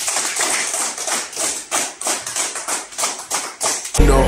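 A small group of people clapping: quick, uneven claps that start suddenly and stop abruptly.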